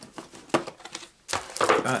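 Clicks and knocks from a small plastic box of craft gems being picked up and handled, with one sharp click about half a second in and a quick run of clicks and rattles near the end.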